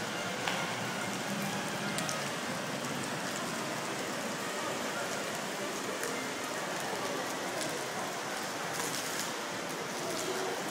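Steady splashing of a row of arcing fountain jets falling into a shallow pool.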